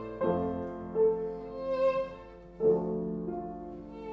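Violin and an 1870 Baptist Streicher Viennese grand piano playing Romantic chamber music together, the violin holding a sustained melodic line. New piano chords come in about a quarter second in and again at about two and a half seconds.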